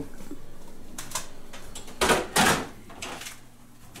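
A slow cooker being carried and set down on a kitchen counter: a light knock about a second in, then two clunks close together about two seconds in.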